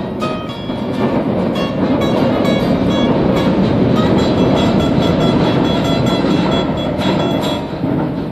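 Two acoustic guitars playing a blues tune while a passing train swells in from about a second in, drowns them out in the middle, and fades near the end.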